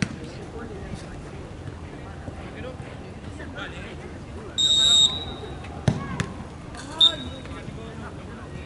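A referee's whistle blows one firm blast. About a second later a football is kicked with a sharp thump, and a short second whistle blast follows, with players' voices shouting in the background.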